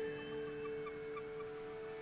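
Quiet closing music: a held, sustained chord with a few short, soft high notes sounding over it in the first second or so.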